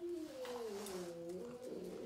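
A dog's long whining moan that falls in pitch over about a second and a half, then holds on a lower note.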